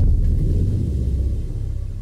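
Deep cinematic boom of an animated logo sting: a low rumble that starts loud and slowly fades away.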